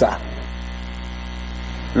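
Steady low electrical mains hum with evenly spaced overtones, unchanging throughout. The tail of a man's speech shows at the very start.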